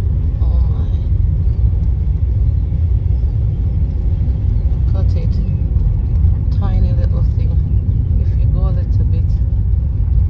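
Steady low rumble of a car driving along a narrow country lane, heard from inside the cabin, with faint voices now and then.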